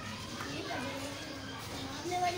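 Indistinct voices talking in the background, with no clear sound from the cow or truck.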